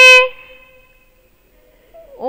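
A woman's voice holding one long level-pitched vowel, the end of a spoken sentence, which stops about a quarter second in and fades away; then quiet.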